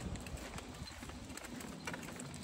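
A toddler's plastic push-along tricycle rolling over a concrete footpath, with irregular light clicks and rattles from its wheels and the walker's steps, over a low rumble of wind on the microphone.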